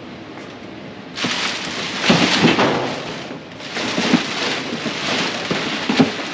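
Large clear plastic bag crinkling and rustling as it is pulled and handled. The rustling starts about a second in, is loudest around two seconds in, and has a short lull past the middle.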